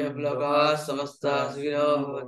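A man chanting a prayer in long, steady-pitched phrases, with one short break just past a second in.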